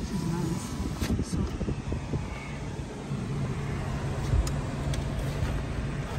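Car engine running and road noise heard from inside the cabin as the car rolls slowly, with a steady low hum settling in about halfway through.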